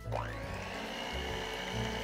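Hamilton Beach electric hand mixer starting up: its motor whine rises in pitch over about half a second, then holds steady as the beaters mix eggs into the batter. Soft background music plays underneath.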